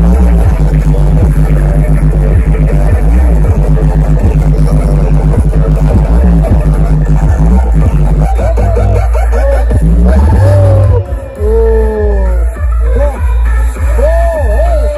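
Giant stacked sound systems blasting electronic DJ music with very heavy bass and a pitched, voice-like lead, two rigs playing against each other in a sound-system battle. Loudness dips briefly about eleven seconds in.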